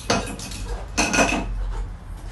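Two bursts of clinking and clattering of hard objects, like glass and metal knocked about on a counter, about a second apart; the second lasts longer.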